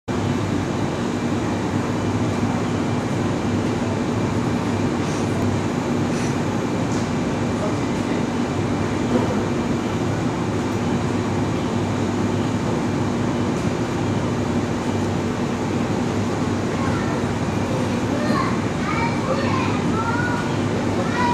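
Steady hum of a stationary JR 583-series electric sleeper train standing at a platform with its onboard equipment running, with voices in the background. Short high chirping sounds come in near the end.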